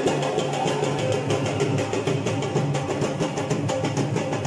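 Dhol drums beating a fast, even dhamaal rhythm.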